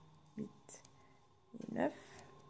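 Soft breathing and whispering under the breath, ending in a short murmured voiced sound rising in pitch near the end, over a faint steady hum.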